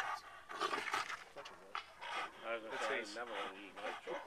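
A dog growling and breathing hard while it holds a bite on a man's arm through a truck's open window, with faint voices around it.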